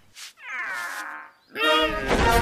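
A cartoon cat character making a meow-like cry that falls in pitch over about a second, then a second, shorter cry starting near the end.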